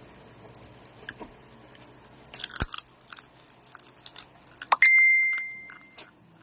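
Close-up biting and crunchy chewing of crispy roast pork (lechon), with one loud crunching bite about two and a half seconds in. Near the end a single bright ringing ding sounds and fades over about a second.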